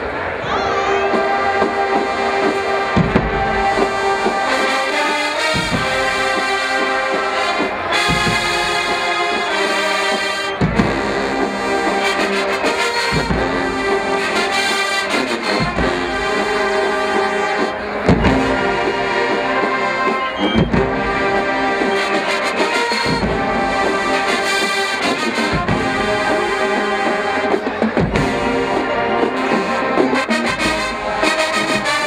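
Stadium marching band playing full-out: massed brass with sousaphones carrying the low end. A heavy low hit lands about every two and a half seconds under the horns.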